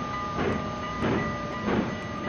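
Train running on rails, with a rhythmic clack about every 0.6 seconds over a faint steady tone.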